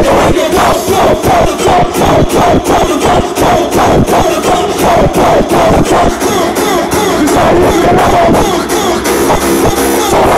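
Loud live dance music through a concert PA, a fast steady kick beat with MCs' voices over it and the crowd joining in.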